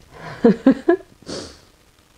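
A few brief voice sounds, then a single quick sniff through the nose about a second and a half in: a person smelling perfume on a paper test strip.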